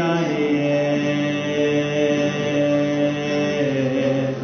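Live acoustic worship band music: acoustic guitars, including a 12-string, with a chord or note held steady for about three seconds.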